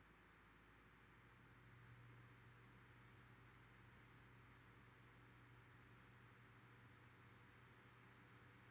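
Near silence: room tone with the faint steady hum and hiss of an air conditioner and fan, the low hum coming in about a second in.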